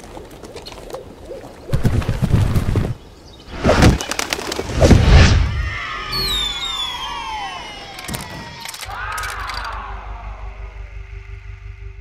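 Sound effects of an animated clay logo intro: a few heavy thumps in the first half, then several falling whistle-like glides and a rising-and-falling call near the end.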